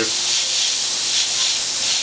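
Airbrush spraying food colour onto a fondant cake through a stencil: a steady hiss of compressed air.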